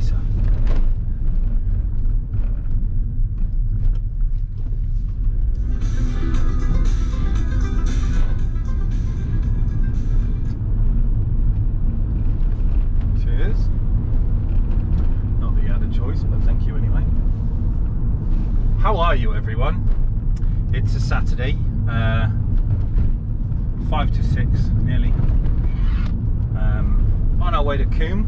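Steady low engine and road rumble inside a moving car's cabin. Over it plays music with a singing voice, busiest from about six to ten seconds in, with short sung phrases in the last third.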